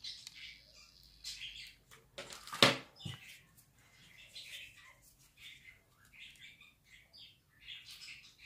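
A small bird chirping over and over in short chirps. There is one sharp knock about two and a half seconds in, as something is set down on the table.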